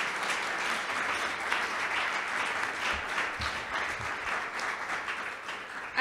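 Audience applauding, a dense run of many hands clapping that eases off slightly near the end.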